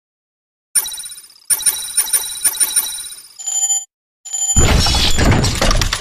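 News-channel intro sound effect: a bell-like ringing struck rapidly, about four times a second, then after a short gap a loud burst of noise with a deep rumble starting about four and a half seconds in.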